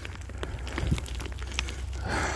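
Loose dirt and small pebbles crackling and clicking in short scattered bits as a hand brushes and scrapes at the soil around an ammonite set in a dirt bank, over a low steady rumble.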